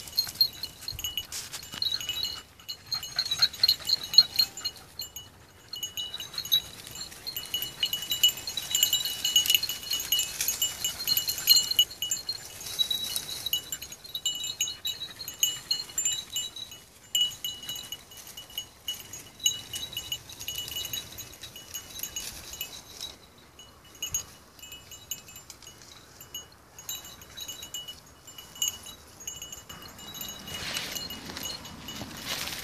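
A small metal bell on a hunting beagle's collar, jingling in uneven bursts as the dog moves through the brush, with a thin high ringing.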